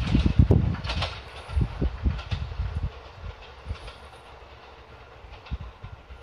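A JR 251-series electric train moving away along the track, its wheels knocking over the rail joints in a series of clacks that grow sparser and fade as it recedes.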